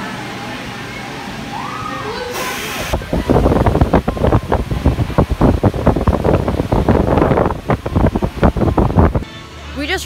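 Vekoma suspended family coaster train running on its steel track: a short squeal early on, then from about three seconds in a loud, dense rumble and clatter that cuts off sharply about nine seconds in.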